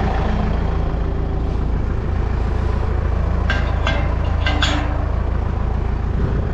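Farm tractor engine idling steadily up close. A few short clanks come around the middle, as the metal drawbar of the water-trough trailer is handled at the tractor's hitch.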